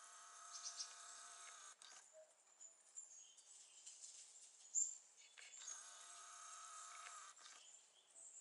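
Faint steady whine of a camcorder's zoom motor, heard twice for about two seconds each, with a short high chirp between the two.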